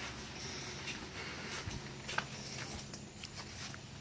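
Quiet background with a faint steady low hum and a few light clicks and taps.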